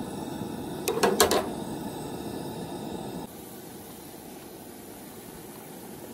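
Vegetables simmering in a pool of liquid in a frying pan over a propane camp-stove burner, a steady hiss as the water from the thawed frozen vegetables cooks off. About a second in, a wooden spatula briefly scrapes and knocks against the pan. A little after three seconds the hiss drops suddenly quieter.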